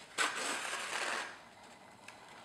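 Paper rustling as a partly sewn notebook's pages and cover are handled and opened, about a second of crisp rustle that fades out.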